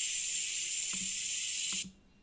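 Pressure cooker letting off steam: a steady, high hiss lasting nearly two seconds, cutting off just before the end.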